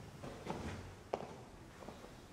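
A few faint, irregular knocks and shuffles of someone moving about, with one sharp click just after a second in.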